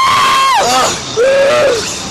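Two women screaming on a Slingshot reverse-bungee thrill ride: a long high scream at the start, then a lower held scream about a second in.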